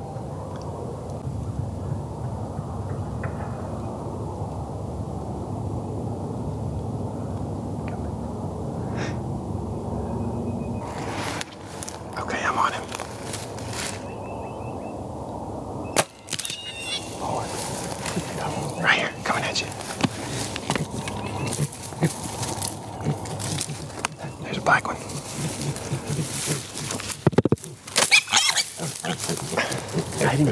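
Feral hogs grunting close by in dry grass, a steady low sound for the first ten seconds or so. After that comes a run of sharp clicks and knocks as a bow is shot at the hogs.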